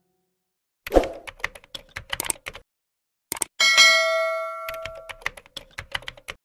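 Sound effects of a subscribe-button end-screen animation: a quick run of sharp clicks, then a bell-like notification ding about three and a half seconds in that rings for about a second and a half, with more clicks under and after it.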